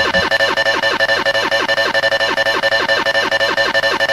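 The opening of a hardcore techno (gabber) track, before the kick drum comes in: a fast repeating synth figure of short falling notes over a steady high tone.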